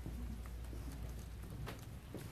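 Steady low room hum with a few faint knocks, the clearest one near the end, from footsteps and a corded microphone being carried and handled.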